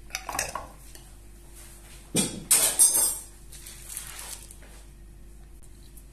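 Kitchen dishes and utensils clattering as they are handled, with the loudest clatter about two to three seconds in.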